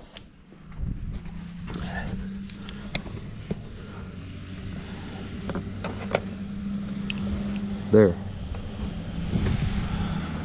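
Scattered clicks and light knocks of a phone and hands moving about an engine bay, over a steady low hum from about a second in.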